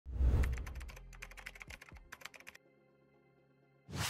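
Intro sound effect: a low boom, then a rapid, irregular run of keyboard-like typing clicks for about two and a half seconds, a faint held tone, and a whoosh near the end as the picture swipes away.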